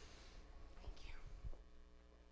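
A quiet pause in a large room: a steady electrical hum with faint, low voices murmuring.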